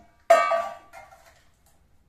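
Steel kitchen utensils clanging together once, with a bright metallic ring that fades within about half a second.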